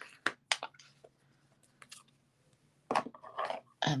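Short, sharp clicks and taps of craft supplies being handled on a tabletop: two clicks in the first second, a quiet stretch, then a cluster of small handling knocks about three seconds in.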